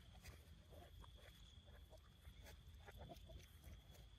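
Near silence with faint, scattered short calls from backyard poultry, a few at a time, over a low outdoor rumble.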